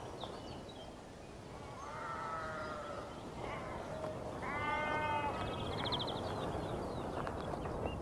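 Sheep bleating, two wavering calls about two seconds in and again near the middle, over a soft steady hush, with a brief high rapid trill just before the second bleat.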